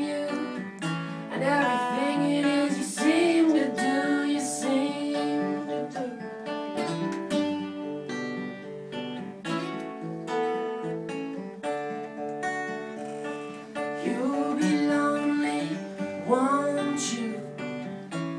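Two acoustic guitars strummed together in a live acoustic song. A sung vocal line runs over them in the first few seconds and again near the end, with the guitars alone in between.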